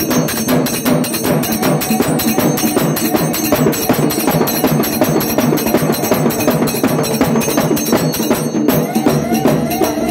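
Live devotional dance music: a stick-beaten drum and jingling metal percussion playing a fast, dense, driving rhythm, with a wavering melody line coming in near the end.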